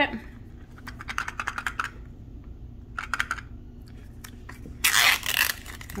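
A wrapped plastic toy capsule being shaken, the miniature inside rattling in quick clicks in two short spells. Then a loud crackle, a little before the end, as its plastic wrapper is torn open.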